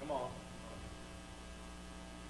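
Steady low electrical mains hum from the sound system, with a faint brief voice just after the start.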